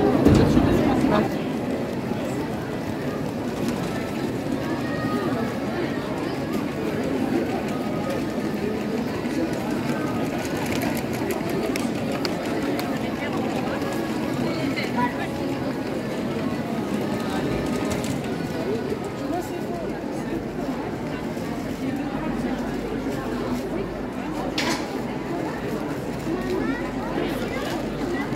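Street crowd of passing pedestrians: a steady babble of many voices talking, with no single speaker standing out.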